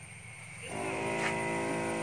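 Electric pump of a battery-powered knapsack sprayer humming steadily while spraying. It is silent for the first half-second, then comes back up and runs on at an even pitch.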